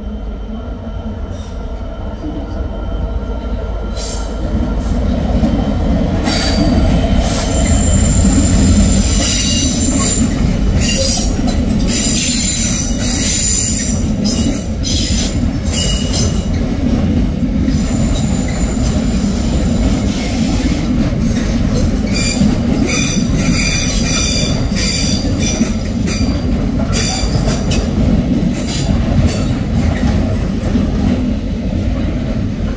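Container freight train hauled by a Class 66 diesel locomotive running through on plain track: a heavy rumble that swells to its loudest about eight seconds in as the locomotive passes. Then the long line of container wagons rolls by with high-pitched wheel squeals and repeated clicks over the rail joints.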